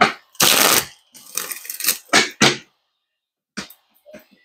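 Tarot cards being shuffled and handled by hand: a few short bursts of card noise, the loudest about half a second in.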